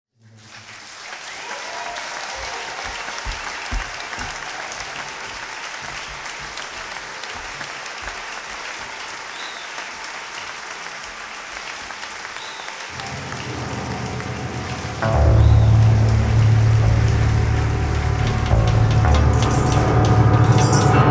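Audience applause at the opening of a live band recording; about thirteen seconds in, a low bass note comes in, and two seconds later the band starts playing in full, much louder.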